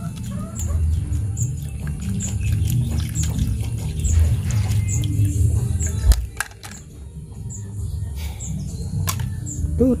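Water sloshing and plastic handling noise as a plastic scoop net is worked through pond water and over a plastic toy basket, with a few sharp plastic clicks in the second half. A faint high tick repeats evenly about every two-thirds of a second.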